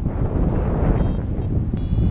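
Airflow buffeting a camera microphone during paraglider flight: a steady, loud low rumble of wind noise with no break.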